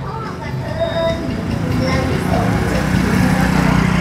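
A motor vehicle's engine running close by, its low hum growing louder over the last two seconds as it draws near.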